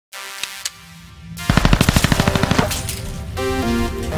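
Title-sequence music with a rapid burst of machine-gun fire sound effect about a second and a half in, lasting about a second, followed by a stepping synth melody.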